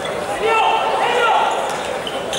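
A player's shout on a futsal court: one long call of about a second, in the middle, echoing in the sports hall.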